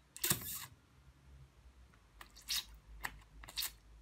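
Small plastic parts of an electric shower's valve housing being handled and pressed by hand: a short scraping rasp about a quarter second in, then a few light plastic clicks.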